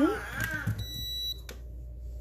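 Beaba Babycook baby food maker giving a single short electronic beep as it is switched on, about a second in.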